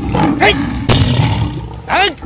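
A lion roaring, heavy and deep, as a dubbed sound effect.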